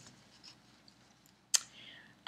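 Faint rustling of a large sheet of Belfast linen cross-stitch fabric being moved and handled, with one sharp click about one and a half seconds in.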